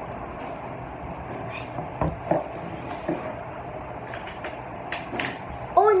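A few light knocks and clicks, about two, three and five seconds in, over a steady background hiss: small plastic toy tyres and thread being handled close to the microphone.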